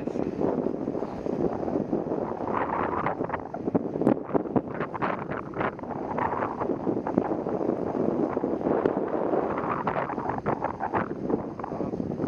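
Wind rushing over the microphone of a moving bike, with tyres rolling on asphalt and frequent short rattles and knocks.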